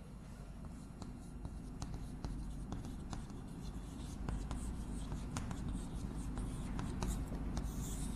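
Chalk writing on a blackboard: a run of short, irregular taps and scratches as characters are written, over a low steady hum.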